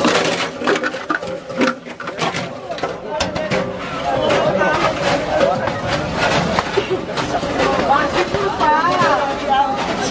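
Pedal-powered shredder crunching PET plastic bottles into flakes: a dense run of irregular sharp cracks and snaps, with people talking over it.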